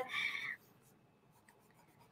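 Kelly Green Prismacolor colored pencil stroking across white card for about half a second, then near silence.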